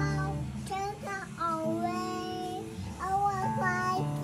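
A young child singing high notes that slide and waver, in two short phrases, over music.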